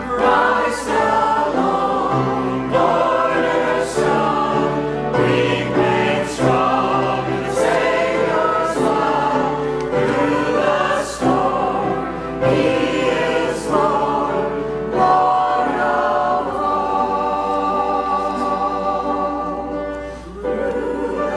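Mixed church choir of men and women singing together, holding notes and moving from note to note without a break.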